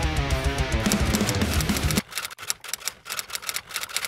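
Music led by guitar that cuts off about halfway through, followed by a sparse beat of sharp ticking hits: the quiet opening of a hip-hop track.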